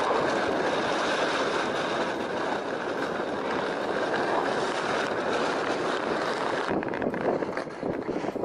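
Steady, dense rumbling noise of wind buffeting the microphone of a handheld camera in snowy high-mountain footage. It thins out and turns gusty near the end.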